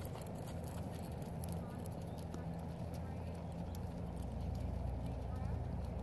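Faint, muffled hoofbeats of a paint horse loping on arena sand, over a low steady rumble.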